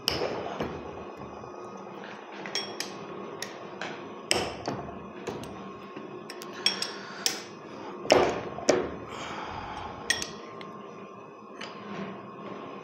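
Steel hex key clicking and knocking against the bolt heads and metal body of a hydraulic vane pump as its cover bolts are loosened in a vise: irregular light metallic clicks, with a few sharper knocks about four and eight seconds in.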